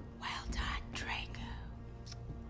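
A few whispered words, breathy and without voice, over faint background music.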